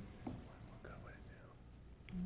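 Faint, low murmured speech over quiet room tone.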